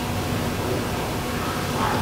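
Room tone: a steady hiss with a faint low hum.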